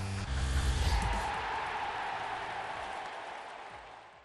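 Ending of an electronic TV theme tune: deep bass hits and tones for about the first second, then a long noisy swell that gradually fades out.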